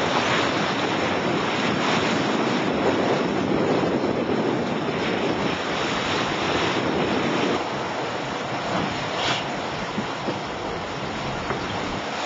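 Steady rush of wind and sea water around a Class40 racing yacht under sail in choppy seas, with wind buffeting the microphone; a little quieter for the last few seconds.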